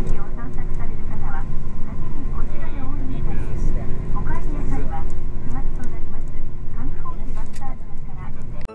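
Bus engine and road noise heard inside the cabin, a steady loud low rumble with a constant hum, with indistinct voices talking over it.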